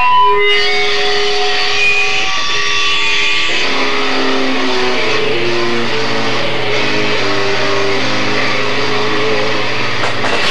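Electric guitars playing long held single notes, then a repeating picked riff from about three and a half seconds in, over a low note held from about five seconds.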